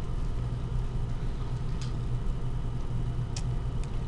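A steady low hum runs under a few short, faint scratches of a pen writing on paper, the clearest a little before two seconds in and twice near the end.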